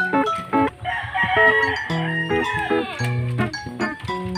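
Background music of plucked guitar notes throughout. About a second in, a rooster crows once, lasting about a second and a half and falling away at the end.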